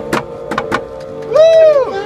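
A double-reed instrument holds one steady note, like a tuning pitch, while sharp clicks go off here and there; about a second and a half in, a loud shouted voice rises and falls over it.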